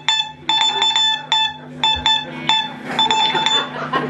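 Morse code played as a high electronic beep, keyed in quick short and long beeps over a steady low held note.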